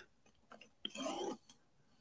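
Sipping a drink through a straw from a stainless steel travel mug: a few small mouth clicks, then a short sucking sip about a second in.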